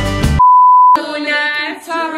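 Loud bar music cuts off abruptly, followed by a single steady beep tone for about half a second, an edited-in bleep like a censor tone. Then several women start singing together.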